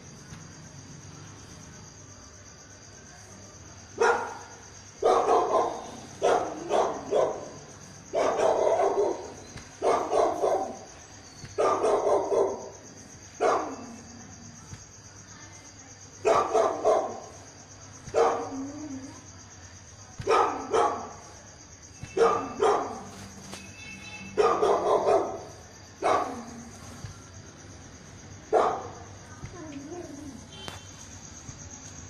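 A dog barking repeatedly, starting a few seconds in: about twenty loud barks in irregular runs of one to three, with short pauses between runs.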